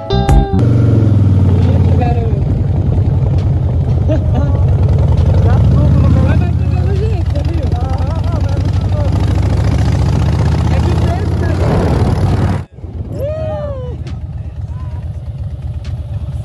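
Motorcycle engine running steadily as the bike rides along, with voices faintly heard over it. It cuts off abruptly about twelve and a half seconds in, leaving a quieter stretch with a voice.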